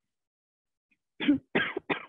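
A woman coughing three times in quick succession, starting a little over a second in.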